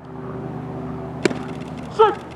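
A single sharp crack about a second in, a pitched baseball popping into the catcher's mitt, over a steady low mechanical hum in the background.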